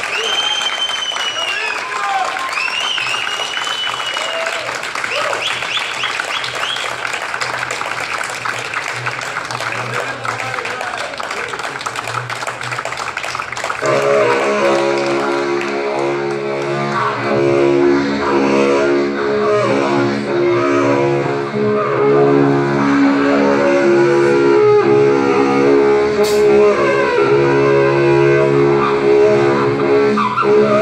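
A crowd applauding with whistles and shouts for about the first half. Then, about halfway through, a low droning wind instrument starts, holding a deep steady note with shifting overtones above it.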